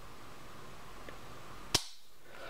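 A single sharp metallic click near the end as the hammer of a Para USA Pro Custom 16.40, a 1911-pattern pistol, falls when it is dry-fired.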